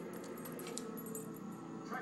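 Faint jingling and clicking of a dog's metal collar tags as the dog moves, over a low background TV broadcast with music and a voice.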